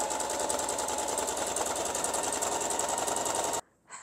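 Singer electric sewing machine running a straight stitch through linen at a steady speed: a steady motor whine under a fast, even needle patter, which cuts off suddenly near the end.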